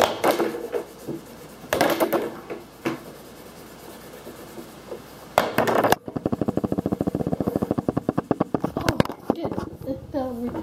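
Felt-tip marker scribbling on paper on a wooden table: a fast, even run of short scratchy strokes in the second half, after a few brief louder bursts.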